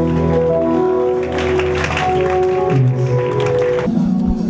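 Live gospel music: a keyboard holds sustained organ-style chords under the group's singing.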